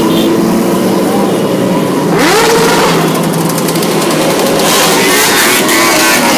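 A pack of motorcycles, sport bikes and dirt bikes, riding past with engines revving. One bike revs up sharply about two seconds in, and another loud, rapid-firing rev comes near the end.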